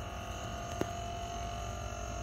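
Steady low background hum with faint steady high tones, and a single faint click a little before the middle.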